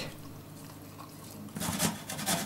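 Quiet kitchen room tone, then, about a second and a half in, a garlic clove being grated on a steel box grater: a quick run of rasping strokes.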